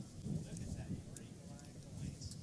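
Faint background voices over a low, uneven rumble.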